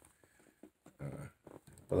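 A man's short, low wordless vocal sound about a second in, followed by a few faint clicks.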